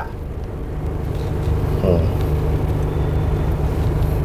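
Car driving along a road, heard from inside the cabin: a steady low hum of engine and tyres.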